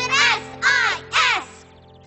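A bird cawing three times, about two calls a second, over background music that fades away.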